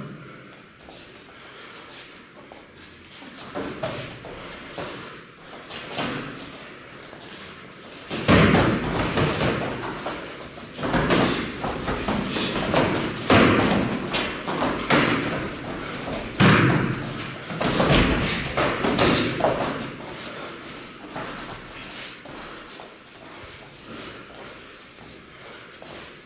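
Kickboxing sparring: gloved punches and kicks landing as a quick run of sharp thuds and slaps, dense through the middle stretch, with only occasional single hits before and after.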